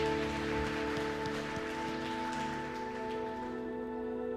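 Soft sustained keyboard pad chords held after the singing stops, with a few faint clicks over them.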